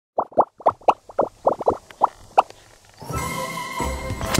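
A quick run of about ten short, rising popping blips, like a bubble-pop sound effect, over the first two and a half seconds. Then music begins about three seconds in.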